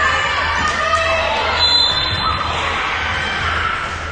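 Indoor volleyball play: the ball is struck and bounces on the court, while girls' voices shout and cheer.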